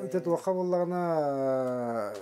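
A man's voice: a few short syllables, then one long drawn-out vowel held for about a second and a half, its pitch slowly falling.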